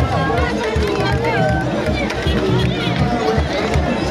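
A large crowd chanting and singing together over a steady beat of kadodi drums, the Bagisu procession music, with many voices overlapping.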